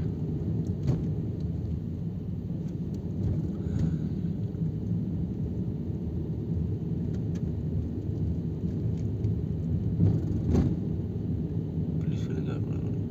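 Steady low rumble of a car's engine and tyres heard from inside the cabin while driving slowly over a rough dirt road, with occasional knocks from bumps. The loudest knock comes about ten and a half seconds in.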